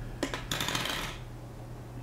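Small metal fly-tying tools clinking on the bench: two light clicks, then a brief scraping rustle, as the whip-finish tool is put down and scissors are taken up.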